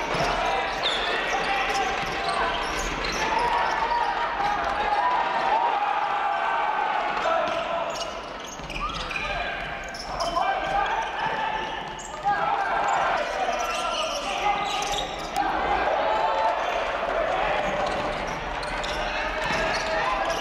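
Live basketball game sound: a ball bouncing on a hardwood court with short sharp knocks, under near-continuous shouting voices from players and the bench.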